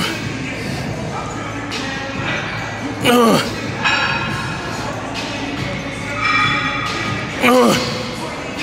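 A man's strained grunts on the hard reps of a chest press set taken to failure: two grunts about four seconds apart, each falling in pitch, over steady background music.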